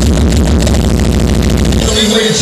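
Uptempo hardcore dance music played loud through a club sound system: a fast, dense run of repeated hits over a heavy bass.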